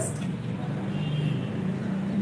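A low, steady mechanical hum, like an engine or motor running in the background.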